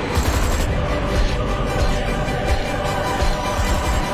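Rapid cannon fire from a fighter jet's gun, dense and continuous, mixed over a dramatic film score.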